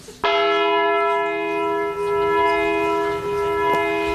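Church bell ringing, starting a moment in as a loud cluster of steady tones that hold without dying away.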